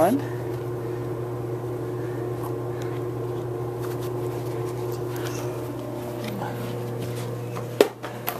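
Steady low mechanical hum of a running household appliance motor, with faint rustling and one sharp click near the end.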